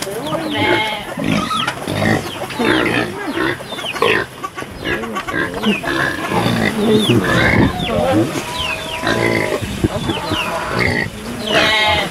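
Kunekune pigs grunting and squealing at feeding time, begging for food, with a run of short high calls throughout.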